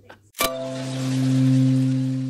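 Outro logo sting: a single sharp click, then a low sustained bell-like hum that swells and slowly fades.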